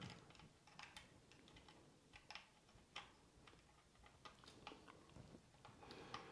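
Faint, irregular small clicks and taps of hands handling a mirrorless camera on a gimbal while a control-cable plug is worked into the camera's side remote socket.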